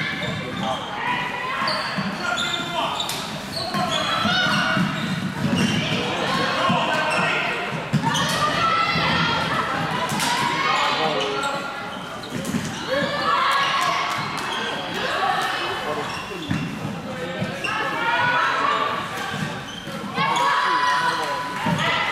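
Live floorball play in a large sports hall: players' voices calling out over the echoing room, with scattered sharp knocks from sticks and the plastic ball.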